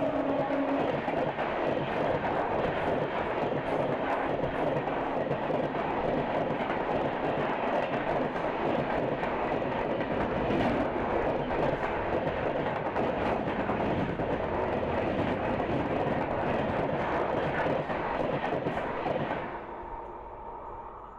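Two passenger trains passing each other at speed, heard from an open coach door: a steady loud rush of wheel, rail and wind noise. It drops off sharply near the end as the last coach of the passing train clears. The last note of a train horn fades out in the first second.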